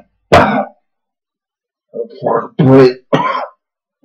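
A man clearing his throat in short bursts, with a couple of muttered words mixed in near the end.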